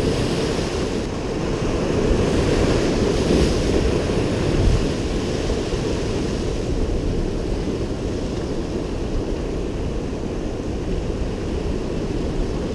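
Ocean surf washing and breaking over rocks, with wind on the microphone.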